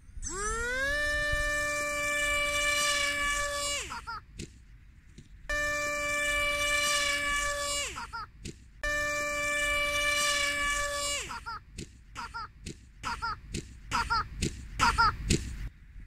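Electric motor and propeller of an RC foam plane whining at a steady pitch. It rises for about a second at first, then runs at full for three to four seconds and is cut, three times over. It ends with a string of short, sharp throttle blips.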